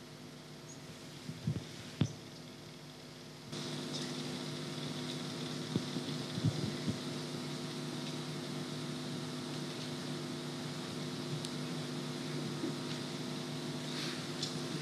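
Steady electrical hum and hiss from the press-room sound system, stepping up in level a few seconds in, with a few faint clicks.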